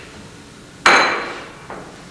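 A single sharp clink about a second in, struck hard and ringing briefly as it dies away, followed by a much fainter tap.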